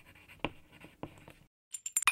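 Pen scratching across paper in short, irregular strokes, stopping about one and a half seconds in, followed by a few short, bright clicks near the end.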